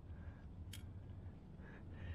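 One short, sharp click about three quarters of a second in, over a faint low rumble: a piece of raw amber knocking against the metal shovel blade as the pile is handled.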